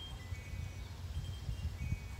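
Faint high ringing notes, several held about half a second each and overlapping, like distant chimes, over a low rumble.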